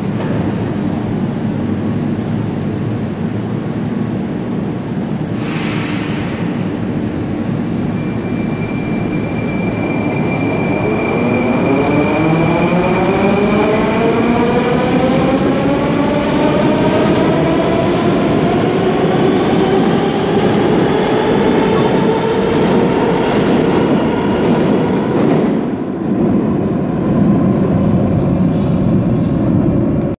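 Moscow Metro train pulling out of the station: a rumble with a brief hiss about six seconds in, then the traction motors' whine of several tones climbs steadily in pitch as the train gathers speed along the platform. The higher sound falls away near the end as the last cars leave.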